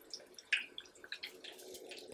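Coconut-breaded shrimp deep-frying in a saucepan of hot oil: faint, irregular crackling and popping as the oil bubbles around them.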